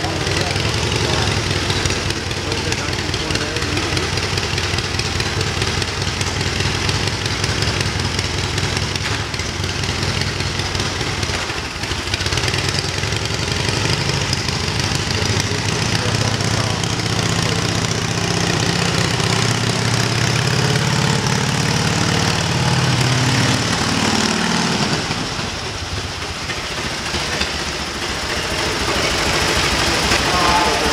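1928 Indian Scout V-twin motorcycle engine running at low revs, rising in pitch for several seconds about two-thirds of the way through, then dropping back.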